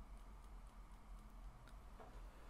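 Near silence: faint room tone with a few light ticks.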